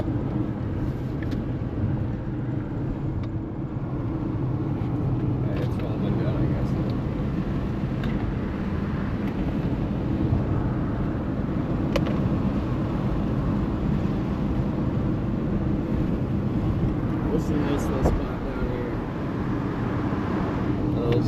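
Steady road and engine noise inside the cabin of a car cruising at highway speed.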